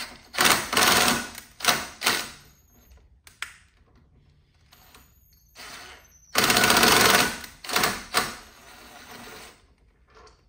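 Ryobi cordless impact driver running in cover bolts on a Sea-Doo supercharger in short bursts of rapid hammering rattle. Two bursts come near the start and two more about two-thirds of the way through, with quiet gaps between.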